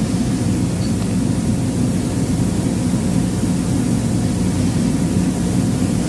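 Steady hiss with a low, even hum: the noise floor of an old 1960s film soundtrack, heard in a gap between words.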